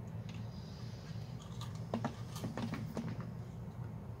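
A few light clicks and knocks of dried bottle gourds being handled and set down, over a steady low hum.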